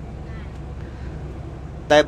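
Steady low road and engine rumble inside a moving vehicle.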